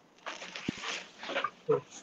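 Breathy noise and short, faint bits of voice over a video-call microphone, with a single click about two-thirds of a second in.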